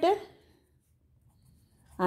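A woman's voice trails off at the start, then a quiet stretch with faint scratching of a pen writing on paper.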